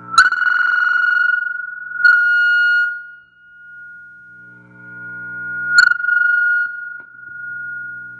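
Blonde Fender Princeton Reverb guitar amp squealing with its reverb turned up high: a loud, steady high-pitched tone that jumps in suddenly with a click, holds for about three seconds and fades. It comes back with another click near the six-second mark and rings on to the end, over a fainter guitar chord. The owner suspects the fault lies in the reverb itself.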